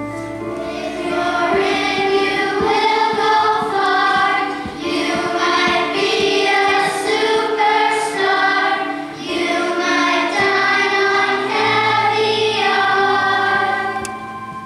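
A children's choir singing together in sustained phrases, with short breaths between phrases.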